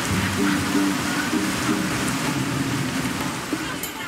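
Steady heavy rain, a dense hiss, with background music playing underneath.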